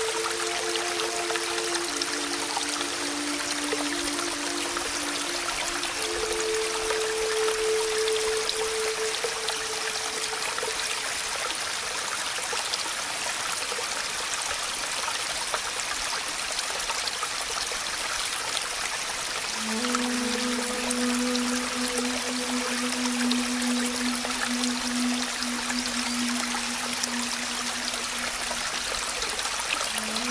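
Steady rain, an even hiss, under soft background music of a few long held low notes. The notes drop out for several seconds in the middle, leaving the rain alone, then come back.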